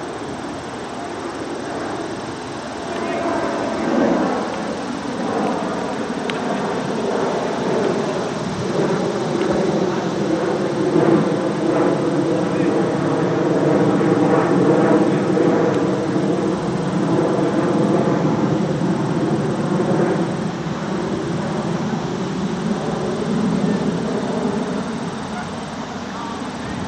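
Several men's voices talking and calling out together as cricket fielders gather to celebrate a wicket, over a steady drone that builds through the middle and fades near the end.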